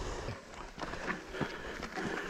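Faint, irregular crunches and clicks of mountain bikes rolling and stopping on a dirt and gravel track.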